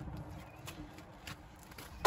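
Lighter-fluid flames burning on a pile of charcoal briquettes in an open grill: a quiet low rustle with a few faint ticks.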